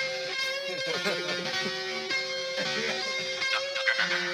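Music: a mashup track led by guitar, with sustained notes and a few bent notes.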